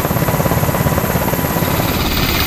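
Seahawk helicopter in flight, its rotor blades beating in a fast, steady rhythm with loud engine noise.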